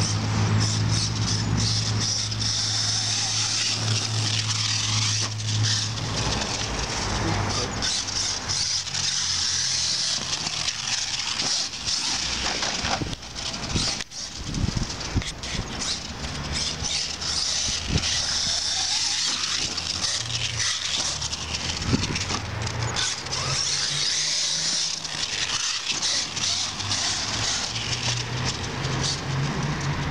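HPI Savage Flux brushless electric RC monster truck running on 6S LiPo batteries across grass. Its high motor whine swells and fades repeatedly as the throttle comes on and off.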